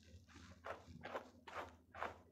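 Hand rubbing and wiping the fur on a small white dog's head: a run of soft, brief rustling strokes, about two a second, over a faint steady hum.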